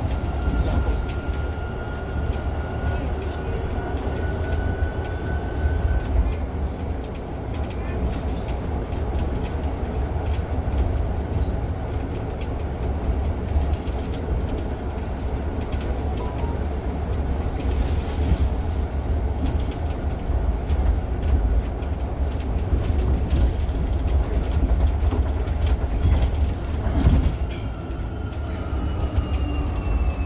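Inside a Mercedes-Benz eCitaro G articulated electric bus under way: steady low road rumble with the thin whine of the electric drive rising slightly as the bus gathers speed in the first few seconds. Near the end there is a thump, then the whine falls in pitch as the bus slows.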